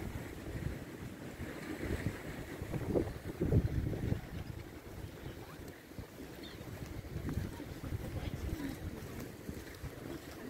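Wind buffeting the microphone in uneven gusts, a low rumble that swells strongest about three to four seconds in.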